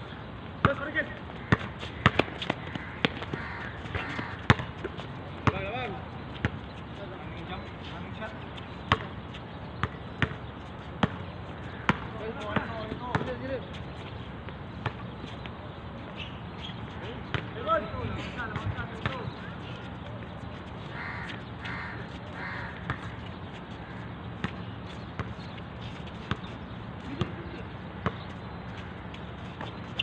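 A basketball bouncing repeatedly on a hard outdoor court as players dribble and pass, in sharp irregular thuds, with players' voices calling out now and then.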